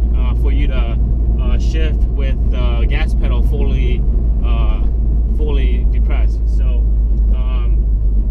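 A man talking over the steady low drone of a Honda Civic Si cruising at light throttle, heard from inside the cabin.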